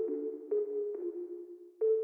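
UK rap/afroswing instrumental beat: an electronic melody of single notes stepping up and down in pitch every half second or so, with no drums or bass under it.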